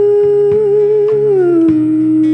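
Female singer holding one long sung note with a slight waver, then dropping to a lower held note about one and a half seconds in. Acoustic guitar and a drum kit play underneath.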